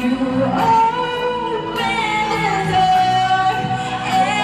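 A woman singing into a handheld microphone. She holds a long note through the second half.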